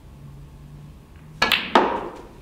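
Snooker cue tip striking the cue ball, followed about a third of a second later by a second, louder sharp knock with a short ringing tail as the moving cue ball makes contact.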